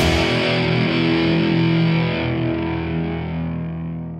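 Distorted electric guitar, a Fender Stratocaster, holding one chord that rings on steadily and then slowly fades away.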